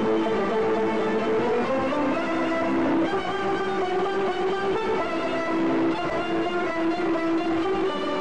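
Live Kurdish maqam ensemble music: violins and plucked strings playing a melody together, with held notes.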